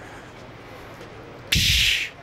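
A man imitating a steam locomotive pulling away with his mouth, close to the microphone: one loud hissing 'tsch' like an exhaust chuff, about half a second long, starting about one and a half seconds in.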